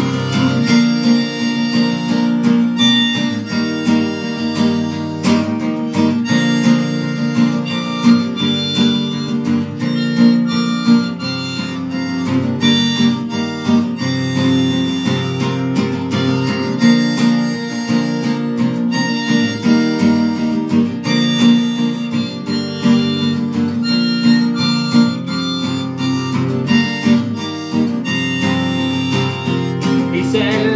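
Harmonica, played from a neck rack, carrying a melody of held notes over strummed acoustic guitar: an instrumental harmonica break in a folk song.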